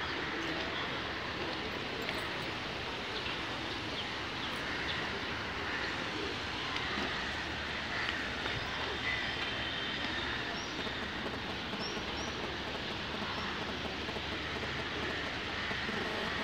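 Steady rushing noise of a shallow river running over rocks, with a few faint, short bird chirps about ten to thirteen seconds in.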